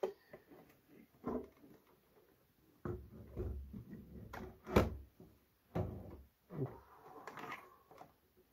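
A Corsair CX750F RGB power supply and its bundle of sleeved cables being shifted and pushed against a PC case: a series of knocks, rubs and scrapes, the loudest knock about five seconds in.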